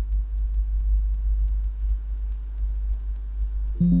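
A steady low hum from the recording's background, with faint scattered ticks. Near the end, a short Windows alert chime sounds as the 'Installation is complete' message box pops up.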